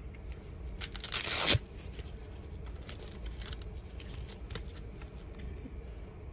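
Velcro strap on a nylon knife sheath being pulled apart: one short rip about a second in, followed by faint handling rustles and small clicks of the sheath.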